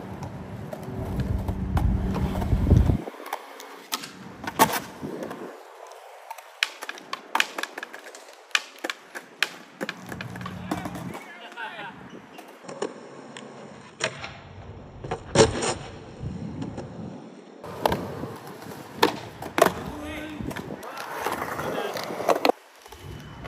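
Skateboard rolling, with many sharp clacks and slaps of the board and wheels striking the ground scattered throughout.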